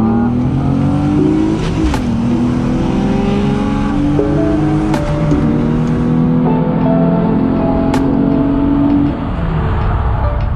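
Car engine heard from inside the cabin, accelerating hard: its pitch climbs, drops suddenly about two seconds in at a gear change, then climbs again. Music plays in the car at the same time.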